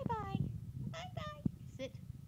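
A Shar-pei whining in four short, high-pitched squeaks, the first falling in pitch. The dog is begging for more salmon treats.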